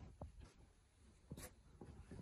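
Near silence with faint rustling of bedding as a man shifts on a bed, and a few soft clicks, the clearest just past the middle.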